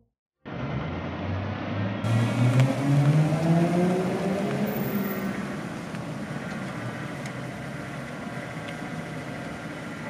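Car engine starting suddenly about half a second in, rising in pitch as the car drives up and slows, then settling to a steady idle once it stops.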